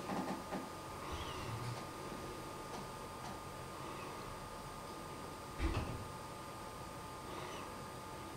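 Quiet room noise with a faint steady high whine, and one soft thump a little before six seconds in.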